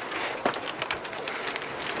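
Luggage being handled: a bag rustling, with scattered small clicks and knocks as a hard-shell suitcase and its telescoping handle are grabbed.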